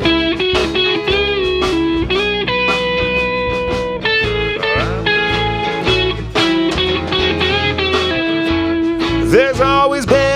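Live rock band playing an instrumental passage: an electric guitar holds and bends long melody notes over bass and a steady drum beat.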